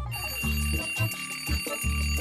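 Twin-bell alarm clock ringing with a rapid, high, even rattle, over background music with a steady bass beat.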